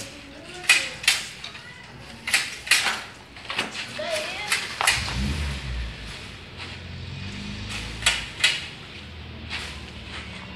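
Homemade pole pruner made from adapted Tramontina shears, its metal blades clacking as it is worked in the tree: sharp clacks, mostly in pairs a little under half a second apart, several times over. A low rumble about five seconds in.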